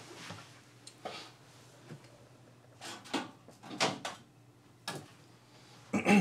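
Quiet handling and movement sounds of a person getting up and fetching an object: a handful of short knocks and rustles spread over several seconds, the clearest cluster about halfway through.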